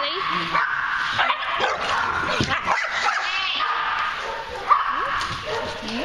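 Several dogs barking and yipping as they play together, short high calls coming again and again throughout.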